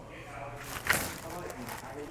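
A single light click about a second in, from a hand working the tonneau cover's metal rear clamp on the truck's bed rail.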